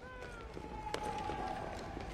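Low background ambience of a television drama scene in a pause between lines of dialogue, with a faint held tone and a light click about a second in.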